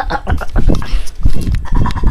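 Camera and microphone being handled roughly: a run of heavy low thuds and rustling knocks, with short, strained vocal noises among them.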